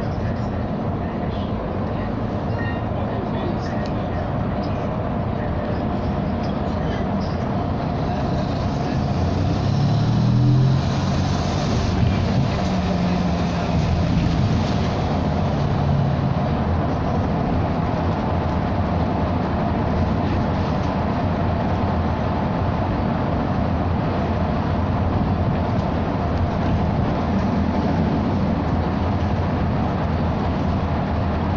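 A SOR NB 18 articulated city bus under way, heard from inside the cabin: a steady mix of engine, drivetrain and road noise. About nine seconds in, the engine note rises in pitch and then holds steady for several seconds.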